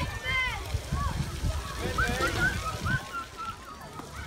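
Children calling and shrieking at a splash pad in the distance, over splashing water and a low wind rumble on the microphone.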